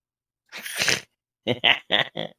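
About half a second in, a man lets out one sudden breathy burst. He then breaks into short, rapid laughing pulses, about four or five in a second.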